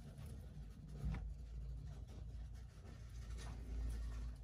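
Faint scratchy rustling of a hamster scrabbling in wood-shaving bedding, with a sharper tick about a second in.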